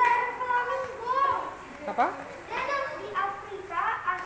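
Children's high-pitched voices talking and calling out, with no words clear enough to follow, and one quick rising call about two seconds in.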